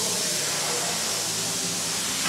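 Steady hiss with a low rumble underneath: the GMC Sierra 3500HD's 6.6-litre Duramax V8 diesel, just remote-started from the key fob, running at idle.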